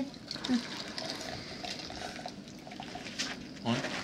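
Water being poured into a container, a steady pouring.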